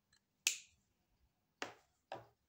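Two sharp clicks about a second apart, the first louder.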